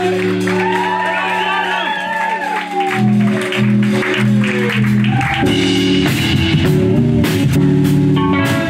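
Live band of electric guitars and drum kit: a held low chord under a long high note that slowly slides downward, drums coming in about three seconds in, and the full band starting a tune about five and a half seconds in.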